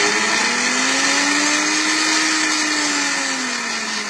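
Silver Crest SC-1589 multifunction blender running with an empty jar, a loud whirring whose motor pitch rises through the first two seconds and then falls back.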